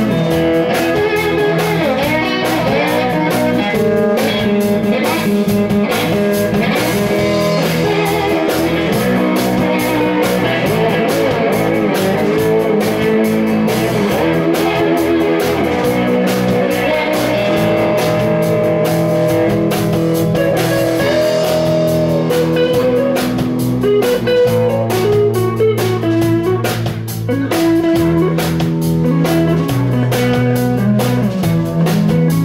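Live blues band playing an instrumental break: electric guitar lead with bending notes over electric bass and drum kit.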